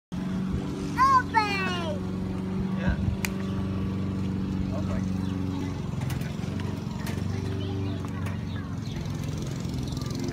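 A small engine runs steadily nearby with an even hum. About a second in, a brief high-pitched squealing cry rises and falls; it is the loudest sound.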